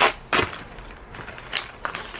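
A black waterproof bag being handled and opened, with a few short crinkles and rustles of its material.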